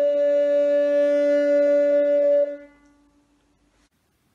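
A wooden recorder and a viola da gamba holding the closing two-note chord of a piece. The higher recorder note stops about two and a half seconds in, and the viol's lower note fades out about a second later.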